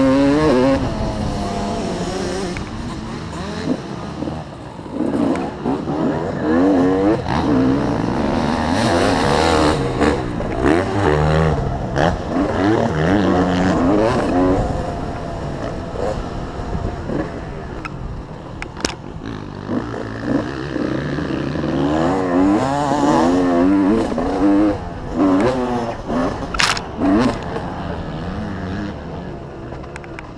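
Honda motocross bike's engine revving up and down over and over as it accelerates and shifts gear through the corners and straights of a dirt track. A couple of sharp clicks cut through, one a little before the middle and one near the end.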